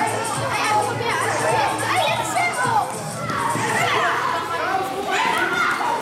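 Children's voices calling and shouting over one another, echoing in a large sports hall during a handball game.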